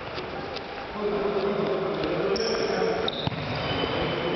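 Indoor futsal play on a sports hall floor: a few short knocks of the ball being kicked and bouncing, brief high squeaks of shoes on the floor, and players' voices calling from about one second in, all echoing in the hall.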